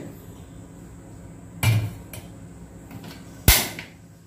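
A stainless steel pot being moved on a gas stove: a dull knock about one and a half seconds in, then a sharp, louder clank with a short ring as it is set down on the burner grate near the end.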